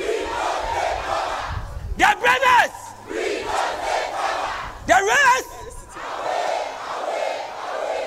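A massed group of fire-service recruits chanting and yelling in unison. Loud, short shouted calls stand out above the crowd of voices about two seconds in and again about five seconds in.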